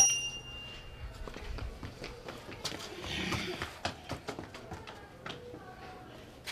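Scattered light knocks and shuffling footsteps, with faint children's voices; a high chime rings out and fades in the first second.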